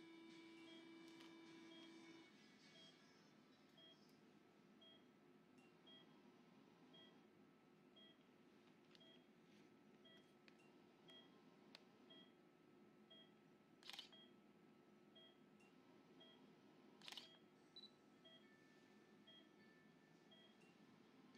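Faint operating-room patient monitor beeping about once a second, the pulse tone of the anaesthetised dog. A steady electronic tone sounds for the first two seconds, and two brief clicks come near the middle.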